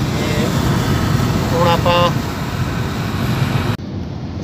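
Steady road and engine noise inside a car cabin at motorway speed, a dense rumble with tyre hiss. The sound changes abruptly near the end.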